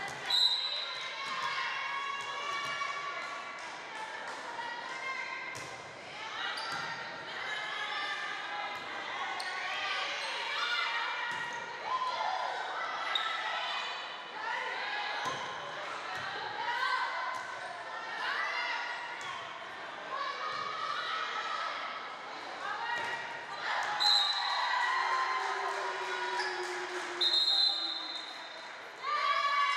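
A volleyball match in an echoing gym: a ball is struck and bounces on the hardwood floor amid the players' shouts and spectators' chatter, with brief shrill tones near the start and twice near the end.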